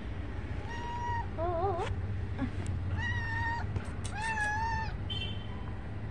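Domestic cat meowing about four times in short calls, one with a wobbling pitch. A steady low hum runs underneath.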